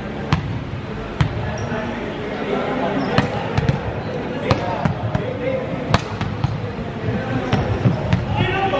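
Balls striking the hardwood floor of a large indoor sports hall: about a dozen sharp, irregularly spaced knocks that ring in the hall, over indistinct voices of players.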